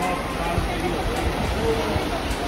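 Steady rushing of a shallow stream flowing over stones and pebbles, with people's voices faintly in the background.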